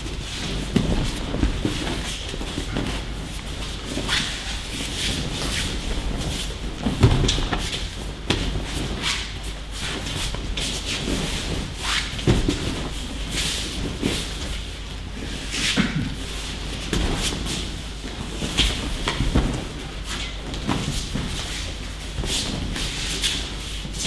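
Aikido practice on mats in a large hall: irregular thuds of people being thrown and taking breakfalls, with feet shuffling and uniforms rustling.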